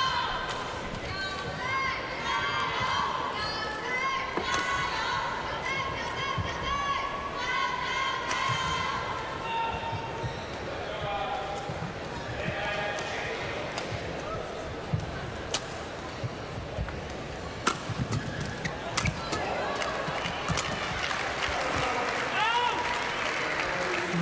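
A badminton rally in an arena: sharp racket strikes on the shuttlecock, most of them in the second half, and the short chirping squeaks of players' shoes on the court mat, over steady crowd noise in the hall.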